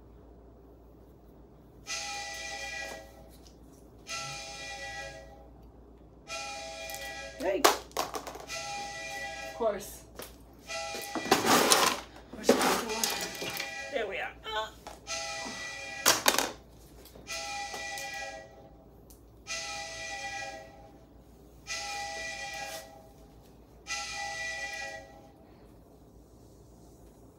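An electronic tone with several pitches sounds in pulses about a second long, roughly every two seconds, over and over. Sharp clicks and louder noises come through the middle stretch.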